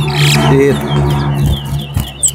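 Caged towa towa (chestnut-bellied seed finch) singing a quick run of short falling whistled notes, over a steady low hum.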